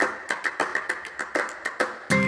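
A quick run of light, irregular clicks or taps, about ten in two seconds, fading between strokes.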